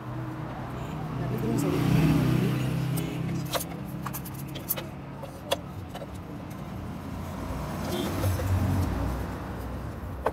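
Light metallic clicks and knocks as a motorcycle's aluminium clutch cover is offered up and seated against the engine case. A low rumble swells twice in the background, about two seconds in and again near the end.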